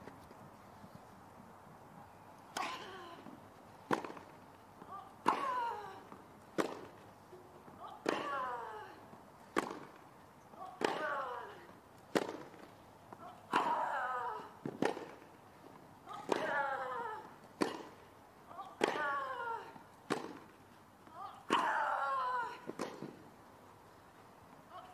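A long tennis rally: racket strikes on the ball about every 1.3 seconds, starting a couple of seconds in, most of them followed by the hitting player's short grunt falling in pitch.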